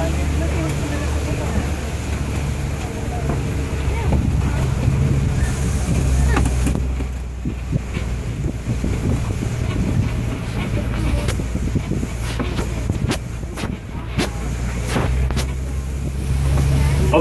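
Open-sided safari ride truck driving along a forest road: a steady low engine and road rumble with wind on the microphone, and a few sharp clicks and knocks near the end as it bumps along.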